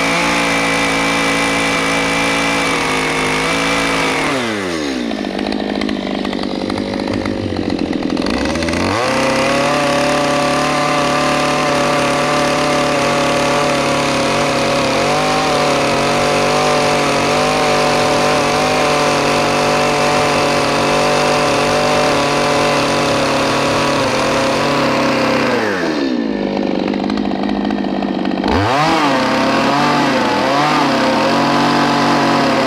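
Gas chainsaw running at high revs, cutting lengthwise along a log. Twice the engine drops toward idle, about four seconds in and again near the end, then revs back up.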